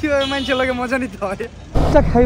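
A man's voice talking on a busy street. Near the end it switches abruptly to the loud rush of wind and engine noise from a sport motorcycle being ridden.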